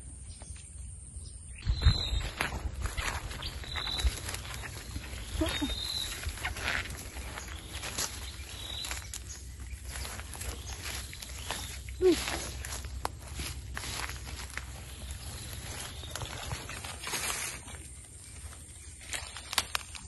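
Footsteps and the rustle and crackle of someone pushing through dense ferns and undergrowth, with a heavier thump about two seconds in. A few short, high chirps sound over it in the first half.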